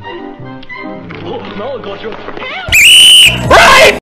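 Cartoon music made of short pitched notes. About two and a half seconds in come two blasts of extremely loud, clipped and distorted sound: an "ear rape" meme effect with a wavering, then rising, high-pitched tone. It cuts off abruptly.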